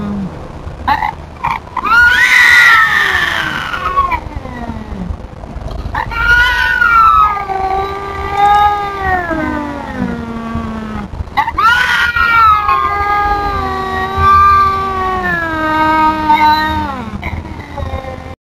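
Cats yowling at each other in a territorial standoff over feeding ground. There are three long, wavering, drawn-out yowls, each sliding down in pitch at the end, starting about two, six and twelve seconds in.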